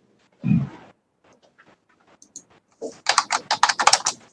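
Computer keyboard typing: scattered keystrokes, then a quick run of about ten keystrokes near the end. A single dull thump comes about half a second in.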